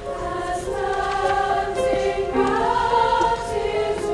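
Large mixed choir singing held chords, with an upper line rising in pitch about two seconds in.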